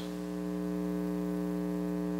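Steady electrical mains hum with a buzz of overtones, unchanging through the pause in speech.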